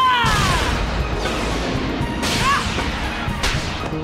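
Animated-cartoon action sound effects: a boy's shout trails off in the first half-second, then a run of loud whooshes and crashing impacts, as a goalkeeper blocks a powerful soccer shot.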